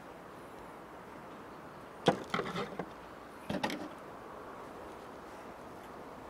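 Two short bursts of clattering knocks about a second and a half apart, the first the louder, over a steady faint hiss: small hand tools being picked up and handled on a tabletop.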